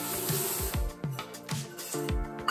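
Electronic background music with a steady kick-drum beat, and a bright high hiss over the first second.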